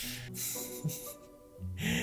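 A man's sharp gasping breaths as he comes down from laughing: one at the start, another about half a second in, and an intake of breath near the end. Steady background music plays underneath.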